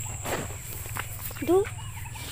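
Footsteps and rustling through brush, with light crackles of dry twigs and leaves; a short spoken word about a second and a half in.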